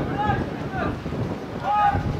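Wind buffeting the microphone in a steady rumble, with short shouted calls from voices on and around the football pitch, the loudest near the end.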